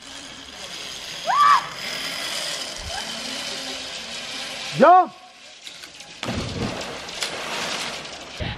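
A zip-line trolley running along its cable with a steady whir, a short whoop about a second and a half in and a loud yell near five seconds as the rider lets go. About a second later comes the splash of her body entering the water, followed by sloshing.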